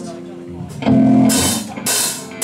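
Death metal band starting a song live: after a brief lull, an electric guitar chord rings out about a second in, followed by crash cymbal hits from the drum kit.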